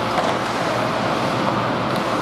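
Steady indoor ice-rink noise during a hockey game: a constant rushing hum of the arena with players' skates on the ice and a faint click about a quarter of a second in.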